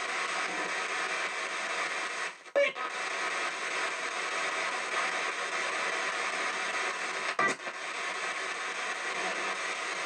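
P-SB7 spirit box sweeping radio stations in reverse through stereo speakers: a steady hiss of static with brief snatches of broadcast sound. It drops out briefly twice, about two and a half and seven and a half seconds in.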